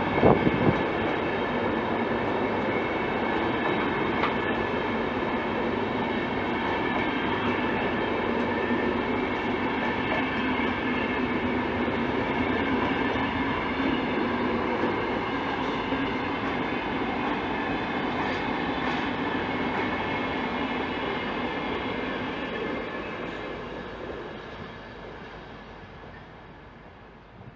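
Double-deck passenger coaches of a departing InterCity train rolling past, with steady wheel-on-rail rumble and ringing tones and a few knocks right at the start. The sound fades over the last few seconds as the last wagons go by.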